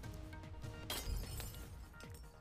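News-channel graphics music with steady held notes, then a sudden crash-like sound effect about a second in that fades over the next half second.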